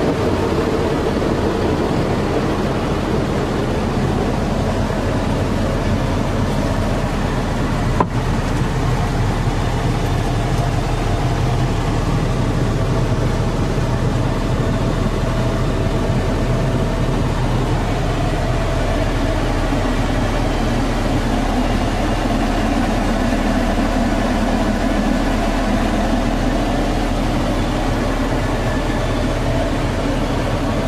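Cummins ISC six-cylinder diesel engine idling steadily, heard from inside the truck's cab. A single sharp click about eight seconds in.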